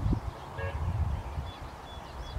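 Birds calling faintly over the low rumble of wind on the microphone. The wind gusts drop off just after the start, and one short pitched call sounds a little over half a second in.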